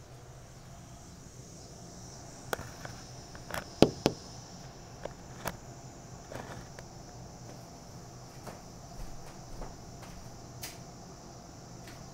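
Insects chirring steadily at a high pitch, with a cluster of sharp knocks and clicks between about two and a half and five and a half seconds in. The loudest knock comes near four seconds, and a few fainter clicks follow later.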